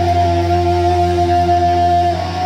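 Live rock band playing: steady held notes from guitar and keyboard over a constant low bass drone.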